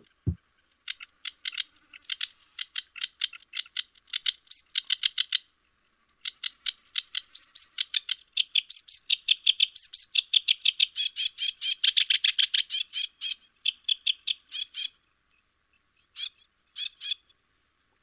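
Sedge warbler singing: rapid strings of short, varied notes. A first phrase is followed, after a brief pause, by a long unbroken run, with a few separate notes near the end.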